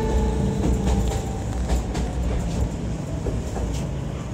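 Steady low rumble of a train running on rails, with scattered faint clicks, as the last acoustic guitar notes die away in the first second or so.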